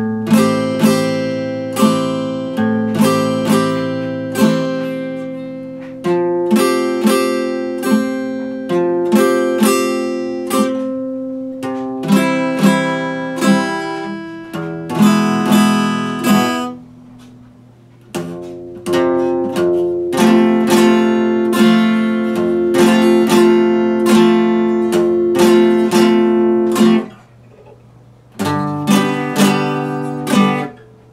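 Epiphone acoustic guitar played fingerstyle without singing: picked notes and chords that ring and decay. The playing pauses briefly about two-thirds of the way through and again near the end.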